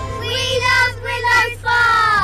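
Children's voices calling out together in drawn-out, sung phrases, ending in a long falling cry.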